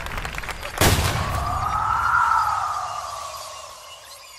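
A sudden boom about a second in, followed by a pitched tone in two layers that rises, then slowly falls and fades away.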